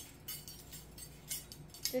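A ring of metal measuring spoons clinking and jingling as they are sorted in the hands: a series of light, irregular metallic clinks.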